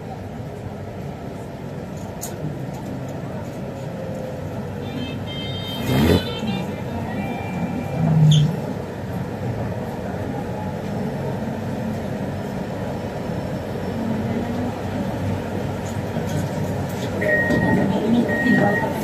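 MRT Putrajaya Line metro train running along the track, heard from inside: a steady rumble of wheels and traction motors, with one sharp clack about six seconds in. Short, evenly spaced high beeps start near the end.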